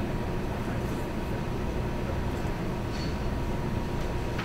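Steady low rumble and hiss of room background noise with a faint constant hum, and a faint tick about three seconds in.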